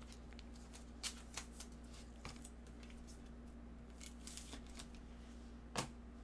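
Football trading cards being handled in nitrile-gloved hands: scattered light clicks and rustles of the cards, with a sharper click near the end.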